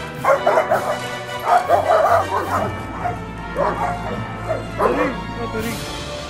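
Dobermans barking and snarling in a scuffle, in about five short, irregular bursts, the loudest group about one and a half to two and a half seconds in.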